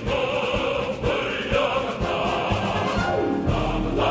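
A choir singing a patriotic song with instrumental backing.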